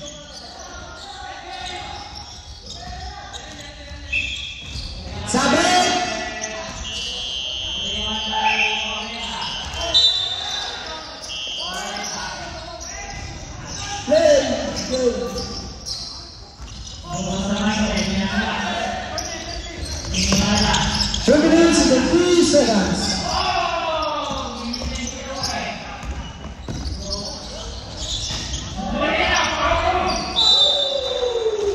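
A basketball being dribbled on a hardwood gym floor, with short high squeaks of sneakers and players' voices calling out, echoing in a large hall.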